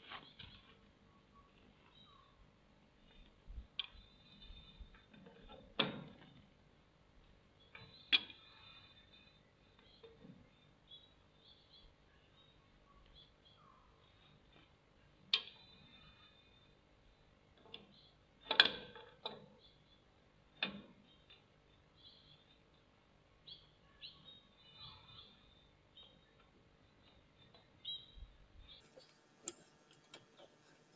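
Intermittent clinks and knocks of hand tools on metal while working on the engine, with a few louder knocks scattered among light ticks.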